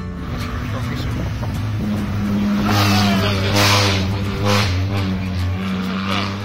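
Turbocharged Kia Picanto GT Cup race car running at speed, heard from inside its stripped cabin, with a couple of louder swells of engine and road noise about three and four seconds in, under background music.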